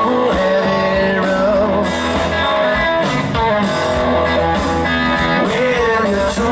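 Live blues band playing loudly, with an electric guitar out front over the band.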